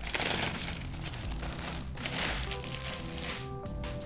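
Clear plastic bag crinkling in bursts as a sweatshirt is pulled out of it, loudest near the start and again about two seconds in, over background music.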